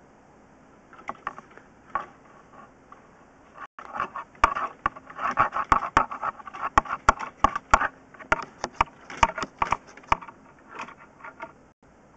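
An irregular run of sharp knocks, clicks and scrapes, a few at first, then a dense clatter from about four seconds in that thins out near the end: handling noise from a drain inspection camera rig.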